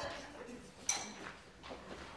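Quiet stage ambience with faint voices and one sharp, brief metallic clink about a second in.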